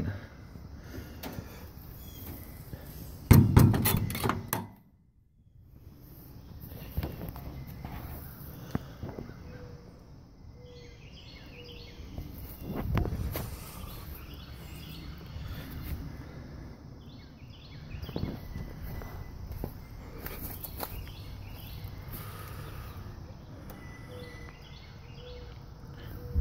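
A horse trailer's compartment door shut with one loud thunk a little over three seconds in, followed by steady outdoor noise in light rain with short bird chirps now and then.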